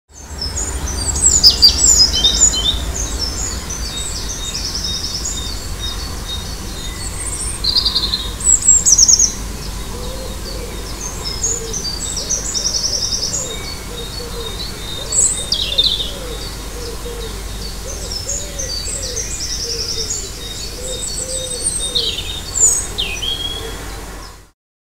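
Dawn chorus of songbirds: many short high chirps and trills throughout, with a lower call repeated over and over from about ten seconds in, over a steady low rumble. The sound cuts off suddenly at the end.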